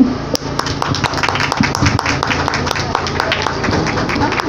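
Audience applauding: many quick, irregular hand claps, with a steady low hum underneath.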